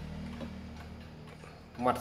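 Mechanical wind-up pendulum wall clock (Sato Clock 15-day, Japanese) ticking, over a steady low hum.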